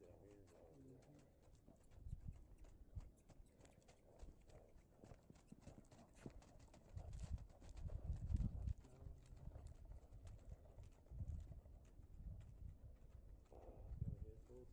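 Faint hoofbeats of a ridden Belgian mule moving through snow, loudest about halfway through as it passes close.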